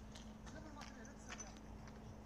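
Faint distant voices with scattered light clicks over a low steady hum.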